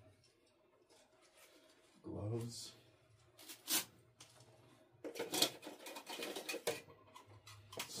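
Gear being rummaged through and handled while packing: a sharp click near the middle, then a couple of seconds of clattering and rustling, with a short mumbled voice sound about two seconds in.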